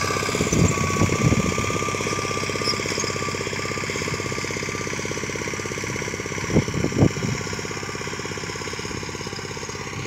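Small engine of a self-propelled wheat reaper running at a fast, even beat while cutting wheat, growing fainter as the machine moves away. Sharp knocks come out of the running, a few about a second in and two louder ones about seven seconds in.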